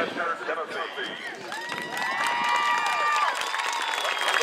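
Crowd in the stadium stands cheering and clapping, with long whoops rising and falling over the clapping from about a second and a half in; a voice talks at the start.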